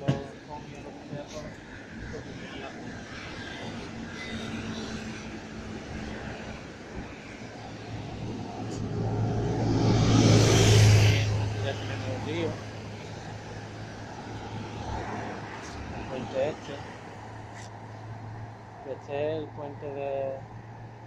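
Road traffic on a city street, with a large vehicle passing close by: its noise builds to a peak about halfway through, and a steady low engine hum carries on afterwards.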